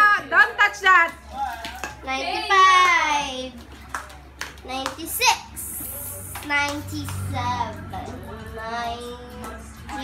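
A young girl singing and vocalizing in a high voice, in short rising and falling phrases with brief pauses between them.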